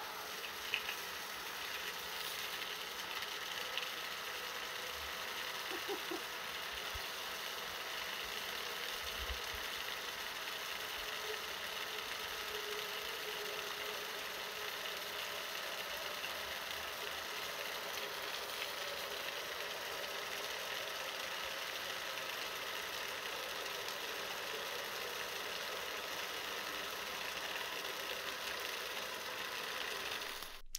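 Pump cart's three-phase electric motor and pump running steadily at full speed, driving a strong jet of water out of an inch-and-a-half hose to splash on pavement: an even, unbroken rush with faint steady tones.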